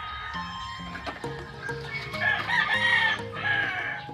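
A rooster crows once, a long call starting about halfway through, over background music.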